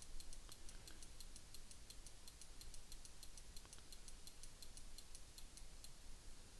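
Rapid, regular, faint ticking, about six ticks a second, from a computer mouse's scroll wheel being turned to step an animation timeline frame by frame.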